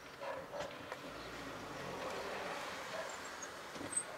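Faint, steady noise of a car driving slowly, heard from inside the cabin, with a few faint short sounds in the first second.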